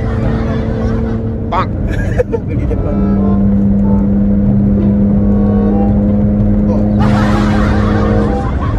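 Car engine and road noise heard from inside the cabin at highway speed: a steady drone whose pitch steps down slightly about three seconds in, as after an upshift.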